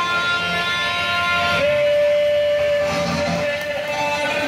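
Music playing, with a long held note from about one and a half seconds in until near the end.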